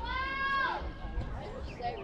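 A high-pitched voice shouting one drawn-out call, under a second long, that rises slightly and then drops in pitch as it ends, over faint background chatter.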